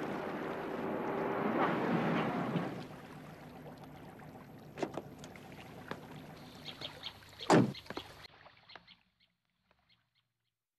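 A car running as it pulls up, loudest for the first three seconds and then dropping away, followed by a few light clicks and one loud thunk of a car door shutting about seven and a half seconds in.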